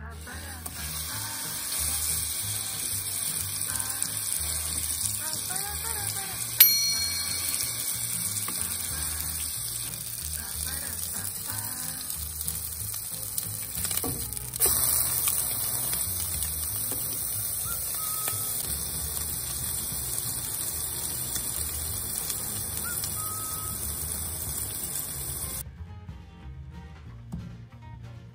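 Beef patty sizzling as it fries in coconut oil in a nonstick pan. About a quarter of the way in there is one sharp click that rings briefly, and a little past halfway the sizzle grows louder.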